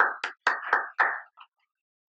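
Hand claps, about four a second, stopping about a second and a half in.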